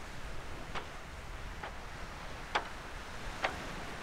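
Footsteps in dry beach sand, four steps at a slow, even walking pace, over a low rumble of wind on the microphone.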